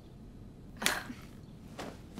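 Swish of a cloth garment being flicked through the air about a second in, with a fainter swish near the end.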